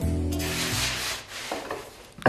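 Soft rubbing of a hand sweeping over thinly rolled buckwheat pasta dough on a floured wooden board, starting about half a second in and lasting under a second. Background music with held notes plays under it and fades out.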